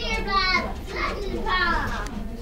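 A young child's high-pitched voice calling out in short bursts, over a steady low hum.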